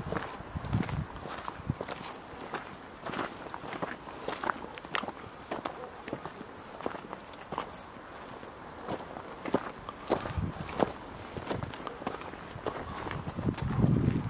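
Footsteps of people walking on a dry dirt path, a steady pace of about two steps a second.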